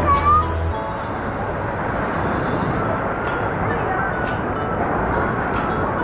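A short, high-pitched rising cry, a young child's voice, just after the start, over steady background noise and music.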